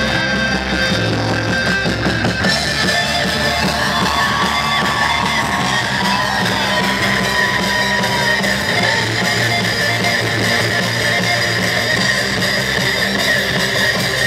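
Rock band playing live and loud, led by electric guitar.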